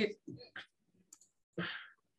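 A few light computer mouse clicks as menu commands are picked in CAD software, with the tail of a spoken word at the start and a short breathy voice sound near the end.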